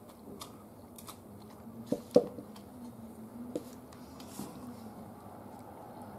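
A meal being eaten: chewing with scattered light clicks of chopsticks on the dishes, two sharper knocks about two seconds in.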